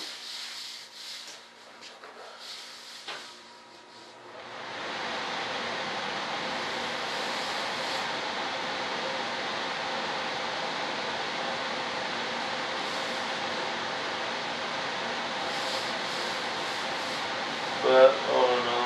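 Electric sander running steadily on the model's wing, switching on about four and a half seconds in after a few light handling clicks.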